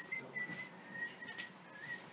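A faint, thin whistle held on one high note, wavering a little in pitch and sliding up briefly near the end.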